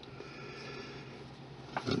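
A quiet room with a low, steady hum and faint, even noise. A man's voice starts just before the end.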